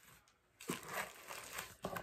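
Packaging crinkling and rustling as items are handled, starting about two-thirds of a second in after a brief hush.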